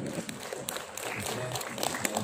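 Audience clapping: scattered, irregular handclaps, with murmured voices underneath.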